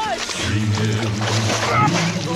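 Icy water sloshing and splashing as a man is hauled up out of an ice hole.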